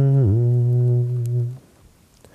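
A man humming one low, steady note that dips briefly in pitch just after the start and stops about one and a half seconds in.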